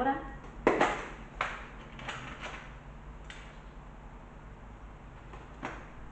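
Handling of a small box of staples and staple strips on a tabletop: about five light clicks and knocks in the first few seconds, then one more click near the end.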